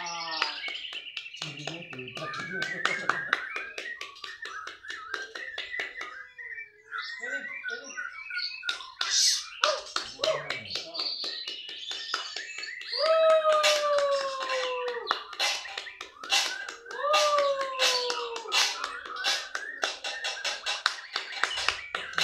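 Caged white-rumped shamas (murai batu) singing and calling against each other in a duel, a busy mix of rapid clicks, chirps and short whistled phrases. Two longer falling calls stand out, one about a third of the way in and another a few seconds later.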